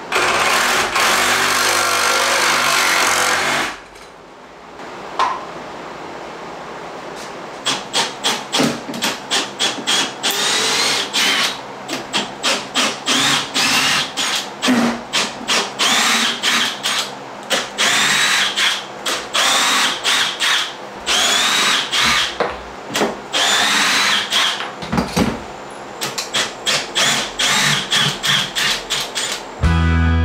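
Cordless reciprocating saw cutting into the wooden framing of a doorway. It runs in one long continuous burst for the first few seconds, then, after a pause, in many short stop-start bursts.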